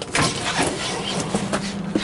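A caravan's pleated vinyl concertina door slid open along its track, a rattling slide with a knock shortly after it starts and another near the end, over a low steady hum.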